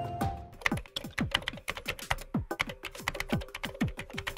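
Keyboard-typing sound effect: quick, slightly irregular key clicks at about four to five a second, each with a short dull thump, starting about half a second in as the tail of background music dies away. A faint held tone lies under the clicks.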